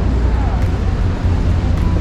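Busy warehouse store ambience: a steady low rumble with a faint murmur of shoppers' voices.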